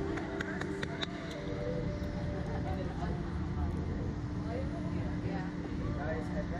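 Indistinct voices over a steady low hum and outdoor background noise, with a few sharp clicks in the first second.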